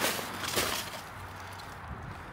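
Handling sounds: a light click at the start and a couple of soft knocks and rustles about half a second in, as a scrap of old leather is set down on the stones of a rock wall.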